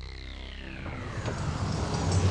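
Car running, a low steady rumble that grows louder, with a falling whine over the first second or so.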